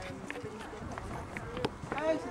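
Indistinct background chatter of voices, with a few sharp knocks from a horse's hooves cantering and jumping on a sand arena.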